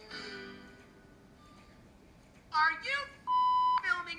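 A cartoon camera sound effect: a steady electronic beep lasting about half a second, cut off by a sharp shutter click, near the end.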